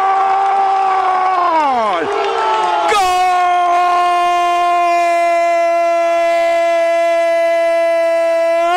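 Male radio football commentator's long drawn-out goal shout, held in two long sustained notes: the first falls off about two seconds in, the second starts a second later and is held steady to the end.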